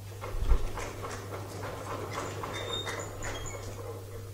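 Audience applause right after the talk ends: many quick overlapping claps or knocks. Near the start there is a single low thump, the loudest sound here.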